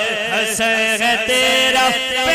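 Male voices chanting a devotional Urdu manqabat refrain in a melodic, ornamented line over a steady held drone.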